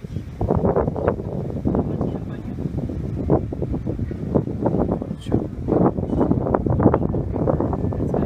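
People talking, with wind on the microphone.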